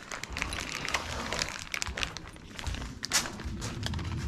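Loose bolts clinking in a small plastic bag as it is carried, with crinkling of the bag and handling noise: an irregular scatter of small clicks and rustles, the loudest about three seconds in.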